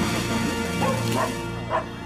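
A dog barking a few short times over background film music.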